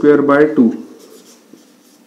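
Marker pen writing on a whiteboard: a few faint, short scratching strokes after a man's voice stops, just under a second in.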